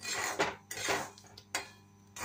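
A spatula stirring black chickpeas through hot salt in a metal pan during dry-roasting, giving several short gritty scraping strokes of salt against the pan.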